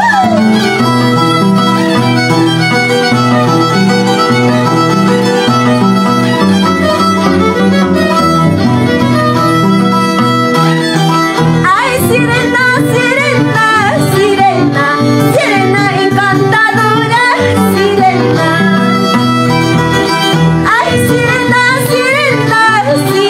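Huayno played on Andean harp and violin. About halfway through, a woman starts singing over them.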